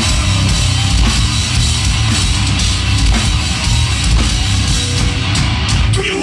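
Heavy metal band playing live and loud: electric guitar over a drum kit in a dense, unbroken wall of sound.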